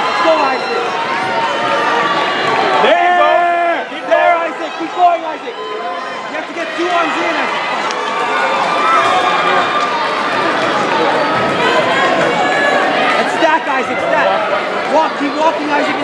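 Crowd hubbub in a busy hall: many overlapping voices talking and calling out, with one clearer, louder voice standing out for a couple of seconds about three seconds in.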